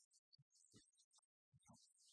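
Near silence: only faint, broken traces of sound, with a brief total dropout about a second and a half in.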